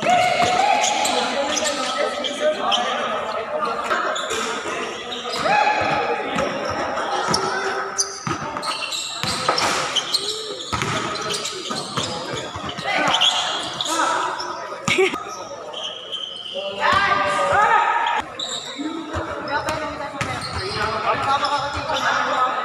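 Basketball dribbling and bouncing on a hard court, the thuds echoing in a large covered hall, with players shouting to each other during play.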